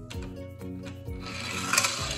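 A small toy car rolling down a wooden plank ramp and onto a tabletop. Its wheels make a rubbing, rasping noise on the wood that builds over the second half and is loudest near the end.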